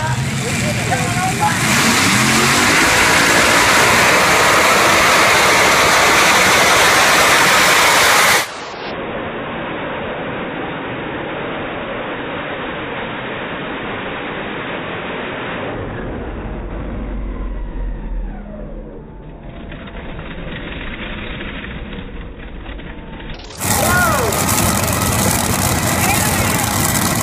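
Modified pulling tractor's engine running at full throttle as it pulls the sled down the track. It is loudest for the first several seconds, then drops suddenly to a lower, duller level, and a voice comes back in near the end.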